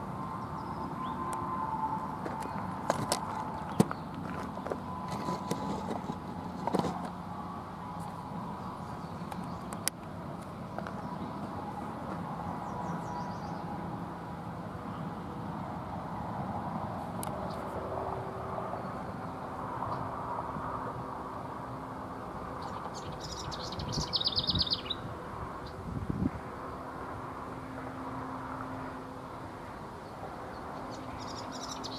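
Birds chirping outdoors, with a short, rapid high-pitched bird call about three-quarters of the way through. Under it runs a steady low hum, and a few sharp clicks fall in the first ten seconds.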